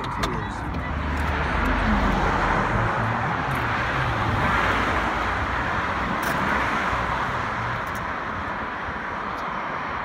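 Road traffic going by: the rushing noise of passing vehicles swells for a few seconds and eases off again, over a low rumble. There is a short click right at the start.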